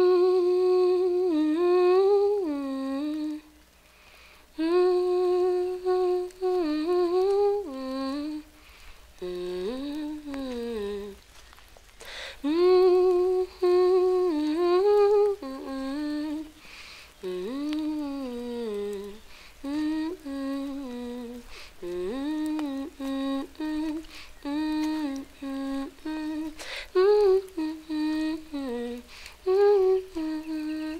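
A woman's unaccompanied wordless vocal melody, hummed or sung, in slow phrases of a few seconds each. The notes are held and slide up and down in pitch, with short pauses between phrases.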